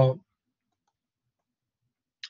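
A man's voice trailing off at the very start, then near silence: room tone.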